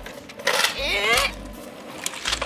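A child's voice giving a short, wavering call about half a second in, lasting under a second, over low gusts of wind buffeting the microphone.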